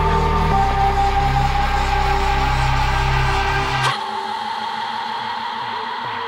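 Electronic trance music from a DJ mix: deep sustained synth bass under held synth tones. About four seconds in, the bass cuts out abruptly with a short sweep, leaving a thinner synth layer.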